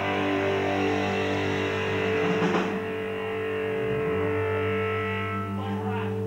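Electric guitars and their amplifiers holding steady, droning notes as a song rings out, with one cymbal crash about two and a half seconds in.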